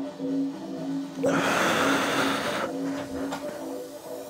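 Pulsing background music, and about a second in a loud, breathy exhale lasting about a second and a half, a lifter forcing air out while straining through a lying leg curl rep.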